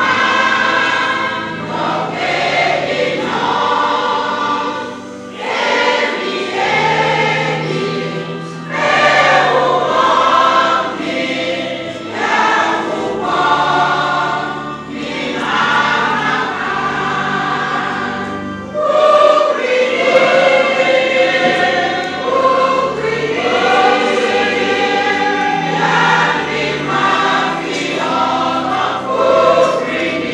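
A choir singing a gospel hymn, many voices together, over a low bass line that steps from note to note.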